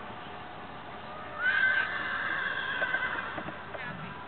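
A horse whinnying: one long call that rises at its start about a second and a half in and is held for about a second and a half.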